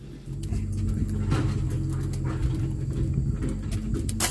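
A steady low hum of an engine running, setting in about a third of a second in, with scattered light clicks over it.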